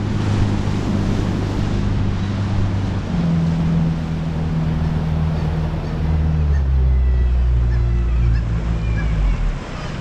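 A rigid inflatable boat's engine running under way, with wind on the microphone and the rush of water along the hull. About six seconds in the engine note drops lower as the boat slows, and it falls away near the end.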